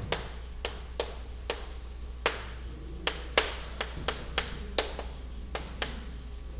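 Chalk tapping against a chalkboard while handwriting: a string of short, sharp, irregularly spaced taps, about two a second.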